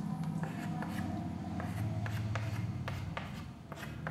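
Writing on a board: a quick run of short scratching strokes and taps, several a second, over a low steady hum.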